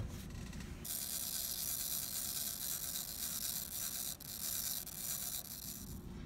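Small motor of a c. 1900 silver-plated automaton match safe whirring with a steady high-pitched buzz. It starts about a second in, after a sharp click, and stops shortly before the end. The motor runs but the figures don't move: the mechanism needs adjustment.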